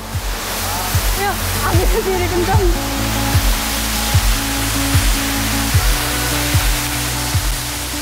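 Water pouring down a waterfall close by: a dense, steady rushing hiss that grows a little louder over the first few seconds. Background music with a steady beat plays under it.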